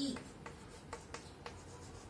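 Chalk writing on a blackboard: faint scratching with a handful of sharp little taps as the chalk strikes the board to form letters.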